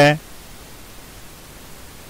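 A man's voice ends a word right at the start, then there is only the recording's steady background hiss.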